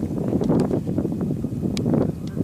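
Wind buffeting the microphone: an uneven, gusting rumble with a few faint ticks.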